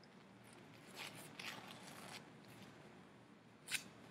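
Faint rustling and tearing of paper tea bags being torn open by hand, in a few short spells, then a single sharp click near the end.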